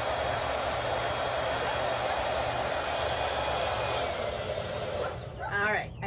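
Handheld hair dryer blowing steadily, then winding down and stopping about five seconds in.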